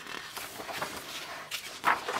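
Paper magazine pages being turned by hand: a soft rustle of paper, with a short breathy sound near the end.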